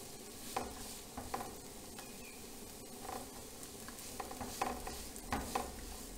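Chopped onion sizzling in oil in a non-stick frying pan, with a spatula scraping and pushing it around in about seven short, irregular strokes over a steady frying hiss.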